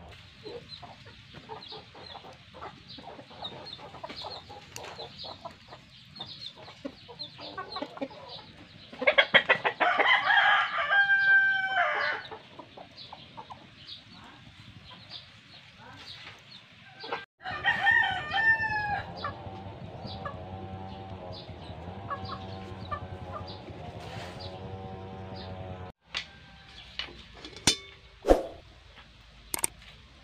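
A rooster crowing, loud and drawn out over about three seconds, around nine seconds in, then a second, shorter crow a little after seventeen seconds.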